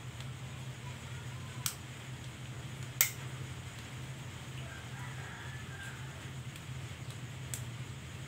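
Steady low hum with three sharp clicks from handling an air rifle, the loudest about three seconds in.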